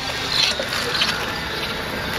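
Tracked robot platform driving: its drive motors and tracks make a steady mechanical rattle with small clicks.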